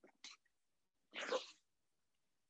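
A man's short, forceful breath out about a second in, preceded by a faint click.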